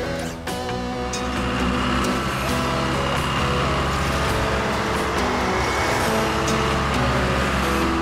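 Background music over the steady low running sound of an animated backhoe loader's engine as it drives along.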